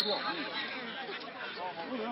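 Football spectators chattering, many voices overlapping at a low level, with a brief, loud, high-pitched blip right at the start.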